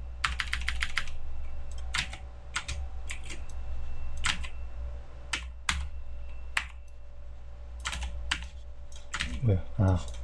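Computer keyboard clicking: a quick run of about half a dozen keystrokes near the start, then single scattered key clicks, over a faint steady hum.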